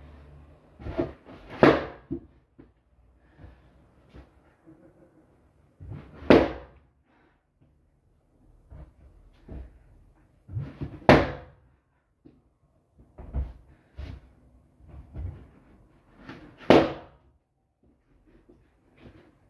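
Balloons bursting one at a time with loud bangs that echo briefly in a small room, four in all about five seconds apart. Softer thumps and shuffling come between the bangs.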